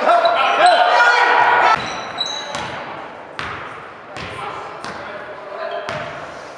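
A basketball being dribbled on a hardwood gym floor: several sharp bounces, echoing in the hall, from about halfway through. Spectators shout and call out loudly during the first couple of seconds.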